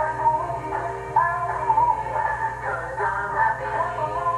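Singing with music, heard through a baby monitor's small speaker over a steady low hum.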